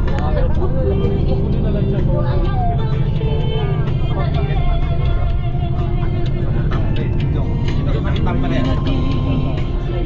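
Steady low rumble of a bus riding along, with music and a voice, held notes as in singing, over it.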